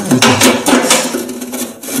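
Quick run of scraping and knocking from the washing machine's metal heating element and its rubber seal being handled at the tub opening.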